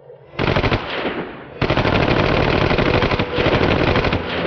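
Submachine gun firing on full automatic: a short burst about half a second in, then a long continuous burst from about a second and a half in.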